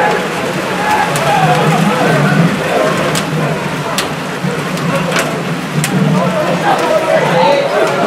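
Footballers' shouts and calls on an open pitch, with a few sharp knocks of the ball being kicked about three, four, five and six seconds in.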